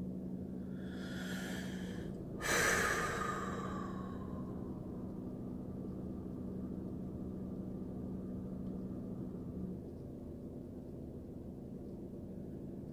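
A man drawing a deep breath in, then letting out a long audible exhale that fades away, over a steady low hum.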